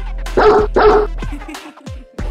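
A dog barking twice in quick succession over music with a steady deep bass beat. The barks are the loudest sounds, and near the end the music drops away briefly with a falling tone.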